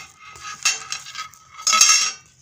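Thin steel cookie-tin lid clanking as a magnet snaps onto it, twice: a lighter clink a little past half a second in, then a louder clank near the end that rings on briefly. The steel's pull on the magnet is the problem that keeps this magnetic Stirling engine from working.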